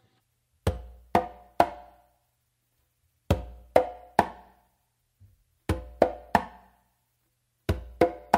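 Congas played by hand in a mambo tumbao variation that moves onto a third drum: four groups of three sharp, ringing strokes, each group about two to two and a half seconds after the last.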